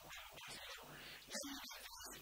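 A man's voice talking into a handheld microphone, quiet and in a reverberant hall, with a brief pitched vocal sound about one and a half seconds in.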